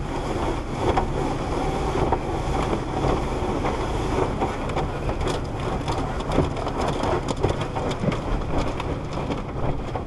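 Water spraying and splashing onto a car's windshield and body in an automatic tunnel car wash, heard from inside the car: a dense, steady rush with many small irregular hits and a low rumble underneath.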